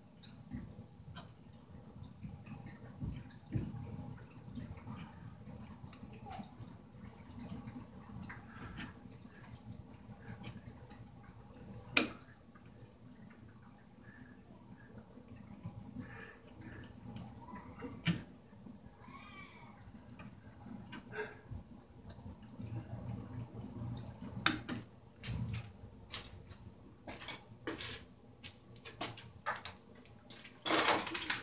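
Lineman's pliers working copper wire ends at a junction box: faint handling rustle broken by scattered sharp metal clicks as the wires are gripped and twisted together for a splice.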